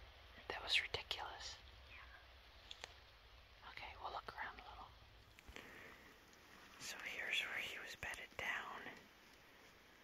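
Hushed whispering in three short spells: about a second in, around four seconds in, and from about seven to nine seconds.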